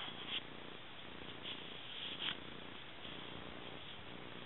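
Norwegian Elkhound puppy growling steadily while it play-bites, with a couple of short clicks.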